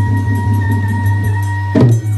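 Traditional Manipuri dance music: a high note held over a steady low drone, broken near the end by one loud drum stroke.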